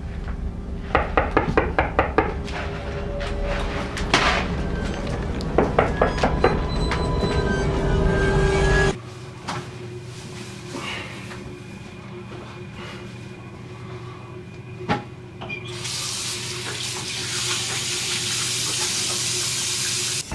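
Knocking and clatter of boxes and jars being handled on a wooden floor. After a sudden drop to a quiet room hum, a bathroom sink tap is turned on in the last few seconds and runs steadily as water splashes into the basin.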